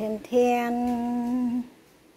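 A woman's voice singing a 'ten-ten-teeen' fanfare: a short note, then a steady note held for over a second before it stops.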